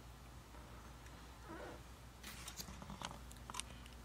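Faint steady low hum from the turntable and amplifier setup, with a few soft clicks and rustles in the second half.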